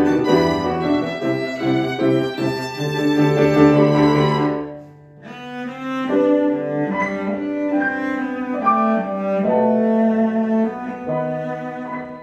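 Live string ensemble, with violin and cello, playing a classical-style arrangement of a K-pop song in sustained bowed notes. The music thins to a brief soft moment about five seconds in, then carries on.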